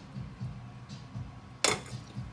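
Faint low background noise, then one short, sharp knock near the end.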